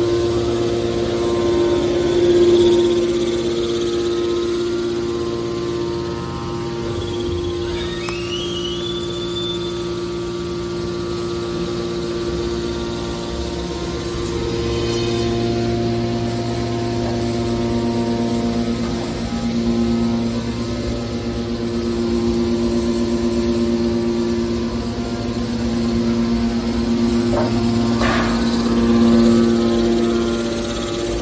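Hydraulic scrap-metal baler's power unit running: a steady hum made of several constant tones from the electric motor and pump, with a rising whine about eight seconds in and another brief whine near the end.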